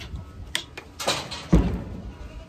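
Handling noise from a plastic bottle of rubbing alcohol: a few light clicks and a rustle, then a low thump about a second and a half in as the bottle is set down on a painted metal truck tailgate.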